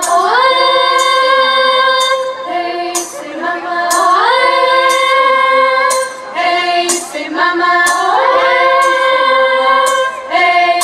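Children's choir singing long held notes. Each phrase opens with an upward slide, about every four seconds, over a crisp tick that falls about once a second.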